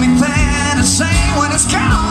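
Live country song: a man singing with vibrato over a strummed acoustic guitar, with a drum beat behind.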